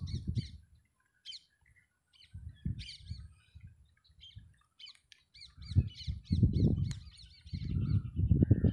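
Small birds chirping over and over, short high rising-and-falling notes in quick runs. Two stretches of low rumbling noise, one in the middle and one near the end, sit under the chirps.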